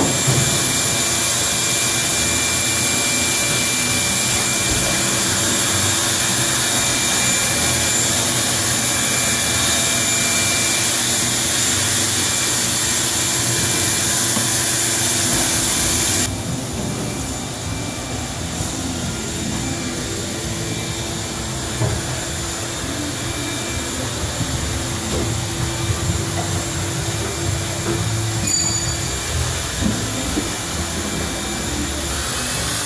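Steady, loud whir of workshop machinery, with a faint steady whine in it. About sixteen seconds in it drops to a lower, rougher steady noise.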